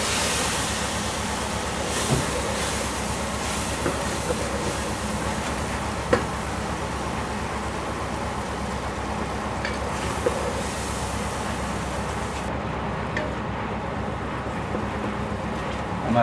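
Onion-and-tomato masala frying in oil in an aluminium pot on a gas stove: a steady sizzle over a low hum, with a few light utensil taps. The sizzle's hiss softens about twelve seconds in.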